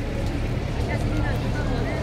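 Outdoor ambience: a steady low rumble, with faint voices of people talking in the background.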